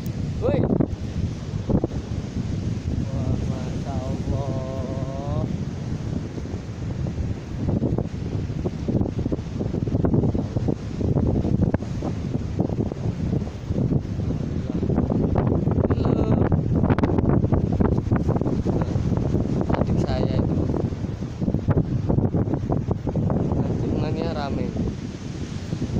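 Wind buffeting the microphone, with ocean waves breaking on the shore underneath. There is a brief voice sound about four seconds in.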